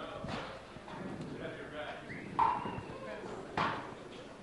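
Indistinct background voices, with a few short sharp knocks.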